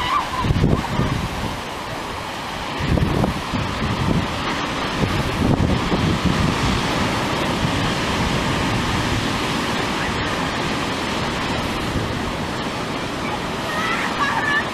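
Rough sea surf breaking and washing up a beach, a steady roar of water. Strong wind buffets the microphone in low gusts, strongest about half a second in, around three seconds and around five to six seconds.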